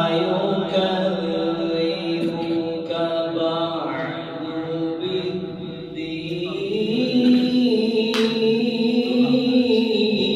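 A man reciting the Quran in Arabic in a slow, melodic style, holding long drawn-out notes. The pitch climbs about six and a half seconds in to a higher held note.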